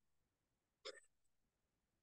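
Near silence: room tone, broken once a little under a second in by a single very brief, faint sound.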